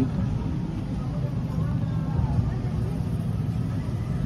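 A steady low rumble of background noise with faint voices in it.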